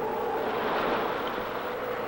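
Hurricane-force wind rushing, with a steady howling tone over the noise.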